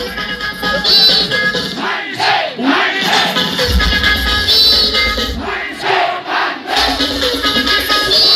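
Dance music played loud through a large outdoor horeg speaker system, with heavy bass kicking in a little before halfway and again near the end, and a crowd shouting and cheering.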